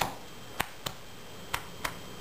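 Two pairs of short sharp clicks, about a second apart, paced like a heartbeat, over a faint room hiss.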